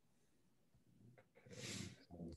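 Near silence on a video call, then a short, soft, breathy sound near the end.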